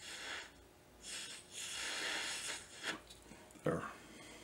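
Breath blown steadily through a jeweler's mouth blowpipe, pushing a lamp flame onto a solder joint on a charcoal block. It comes as long hissing blows with short pauses to inhale. A sharp knock comes near the end.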